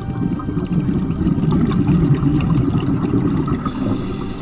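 Underwater bubbling and rumbling with many small crackles, rising at the start and easing off just before the end, over soft steady background music.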